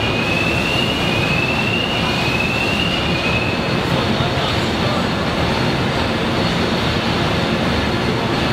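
Steady, loud machinery din of a car assembly line, with a few brief rising squeals in the first few seconds.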